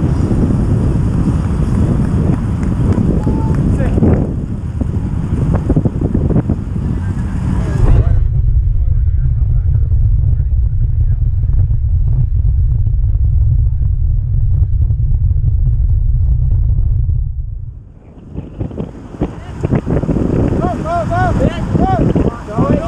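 Wind rushing over a bike-mounted camera's microphone at racing speed on a velodrome, a loud low rumble. About eight seconds in the higher sounds drop away and only the low rumble is left. It dips briefly near the end, and then short squeaky chirps come in.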